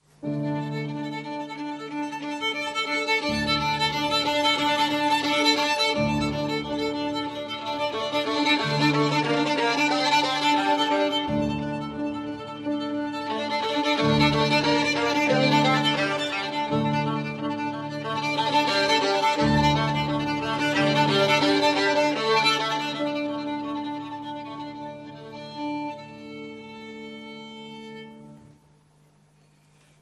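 Violin and grand piano playing a siciliana together, the violin carrying the melody over low piano bass notes that change every second or two. The music starts suddenly, swells and eases in waves, and dies away to near silence near the end.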